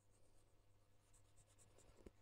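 Near silence: faint scratching of a stylus moving over a tablet screen as handwritten working is erased.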